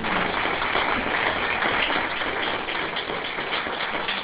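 Audience applause: a steady round of many hands clapping.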